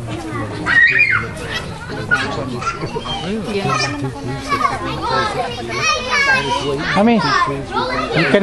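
Children calling and shouting at play in a ball game, their high voices rising and falling, mixed with adult chatter close by.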